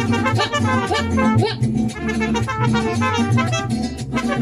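Mariachi band playing an instrumental passage between sung lines, with trumpet over a steady strummed and bass accompaniment.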